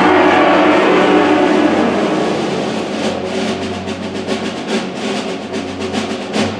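A school symphonic wind band plays with woodwinds, brass and a low bass line. The full ensemble is loud at first and eases off after about two seconds, and then a run of quick percussion strokes comes through over the second half.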